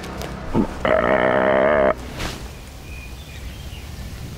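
A whitetail deer grunt: one buzzy, wavering call about a second long.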